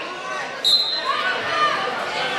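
A referee's whistle gives one short, sharp blast about two thirds of a second in, signalling the start of the wrestling bout, over spectators' voices.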